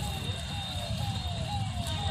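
A repeating electronic tone that slides down in pitch and snaps back up, about two sweeps a second, over a low rumbling noise.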